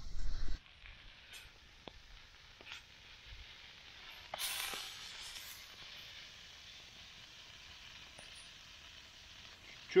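Minced-meat patties frying in a dry pan over a campfire, cooking in their own fat with no oil: a steady soft sizzle, with a louder hissing surge about four and a half seconds in.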